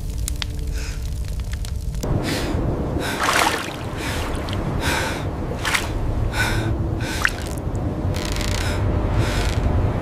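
A man gasping hard for breath, short gasps roughly once a second, over a steady low water rumble. In the first couple of seconds, before the gasping, there is a light crackle of burning paper.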